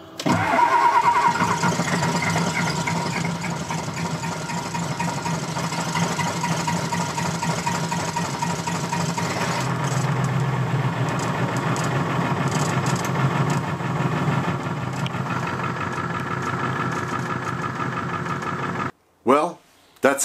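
Diesel truck engine cranking and catching within about a second of the key being turned after glow-plug cycles, then idling steadily. It starts on freshly recharged batteries that a jump box could not crank. The sound cuts off suddenly near the end.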